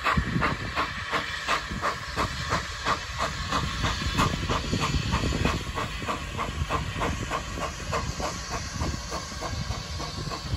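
Steam tank locomotive working past with a train: its exhaust beats come as sharp chuffs, about three to four a second and evenly spaced, over the low rumble of the carriages on the track.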